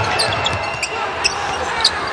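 Basketball game in play: the ball being dribbled and sneakers squeaking on the hardwood court in short high chirps, over steady arena crowd noise.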